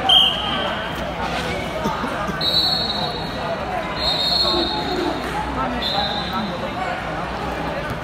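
Referee whistles blowing in a busy wrestling hall: one loud short blast at the very start, then three more steady blasts of about a second each, over constant crowd chatter and voices.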